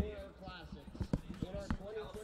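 Voices chatting nearby, with several sharp, irregular knocks, the loudest right at the start.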